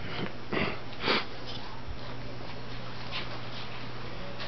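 Two small dogs playing over a rope toy, with a few short breathy sniffs, the loudest about a second in, and fainter ones later.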